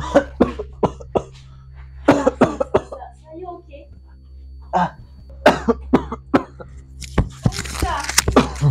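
A man coughing in short fits, four bouts with pained vocal sounds between them, over a steady low hum.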